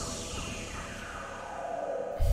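Opening of an electronic beatbox-production track: a sustained synth-like drone with a long sweep falling steadily in pitch.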